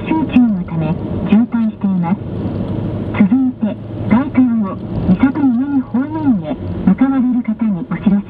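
Highway Radio traffic bulletin in Japanese, a voice played over the car's radio with a narrow, radio-like sound. It reports about a 7 km jam from heavy traffic, then begins the notice for drivers heading toward Misato-minami on the Gaikan. A steady low hum of the moving car runs underneath.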